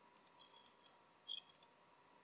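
Faint computer mouse button clicks, several in quick succession in the first second and a few more about a second and a half in.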